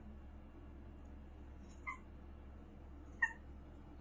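A cat gives two brief, faint squeaks about a second and a half apart, over a low steady room hum.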